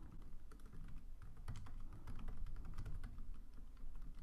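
Faint, quick, uneven keystrokes on a computer keyboard: typing.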